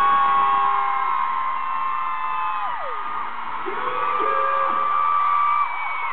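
Concert crowd screaming and cheering, many long high-pitched screams held over each other. The screams slide down together about three seconds in, then swell again.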